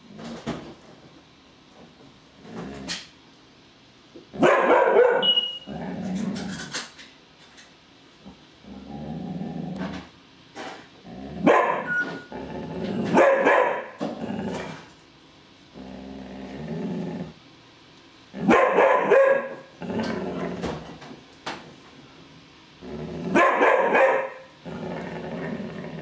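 Afghan hound barking in several loud bouts spread a few seconds apart, with quieter low growls in between: territorial barking at something she has noticed.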